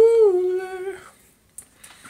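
A man humming one held note that bends up and then back down in pitch, lasting about a second before it fades.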